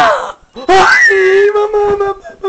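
A person's loud wailing scream: one rising cry breaks off just after the start, then after a short gap a second high, held scream lasts about a second before fading into shorter broken cries.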